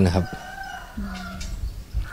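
A rooster crowing in the background: one drawn-out call of about a second, starting just after the man's voice stops.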